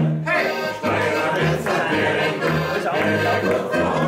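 Alpine folk music played live on several diatonic button accordions (Steirische Harmonika) over a tuba bass line that steps between alternating notes, with voices singing along.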